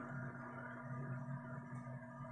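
Faint, steady electrical hum in a quiet room, with no other distinct sound.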